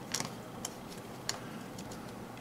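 Small sharp plastic clicks from a Gamo Swarm Maxxim 10-shot rotary pellet magazine being loaded, as pellets are pressed head-first into the chambers and the clip is rotated to the next hole. There are four or so clicks at uneven intervals, the loudest near the start and just past a second in.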